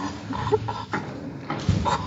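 Teenage boys giving short, high-pitched bursts of laughter during horseplay, with a sharp thump about three-quarters of the way through.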